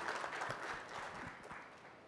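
Audience applause: scattered hand claps that fade away over the first second and a half.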